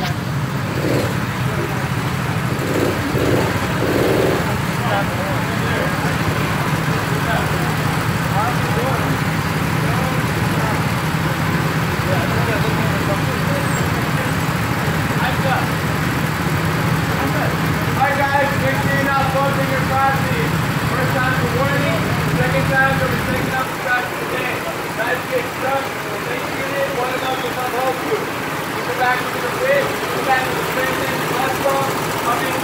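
Go-kart engines idling in the pit lane, a steady low hum that stops suddenly a little over three-quarters of the way through. People talk over it near the end.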